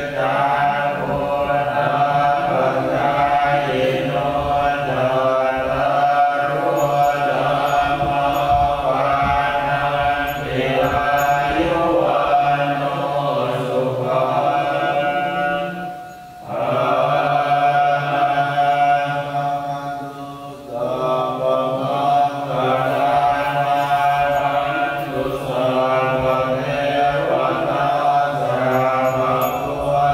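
A group of Buddhist monks chanting Pali verses in unison, a steady low recitation that pauses briefly for breath about halfway through.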